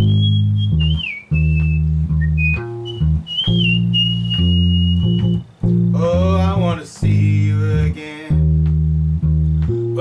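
Electric bass guitar playing sustained low root notes through the Ab–Eb–Ab–Eb, Ab–Eb–Bb–Bb solo changes in E-flat, along with the song's band recording. A high lead melody glides over it for the first half, and a voice starts singing about six seconds in.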